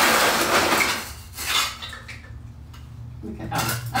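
Dishes and cutlery clattering in a kitchen, loudest over the first second with another short clatter about a second and a half in. A low steady hum comes in near the end.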